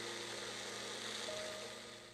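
Magic Bullet blender motor running steadily as its blade blends a thick banana-oat batter, a continuous whirring that fades out near the end.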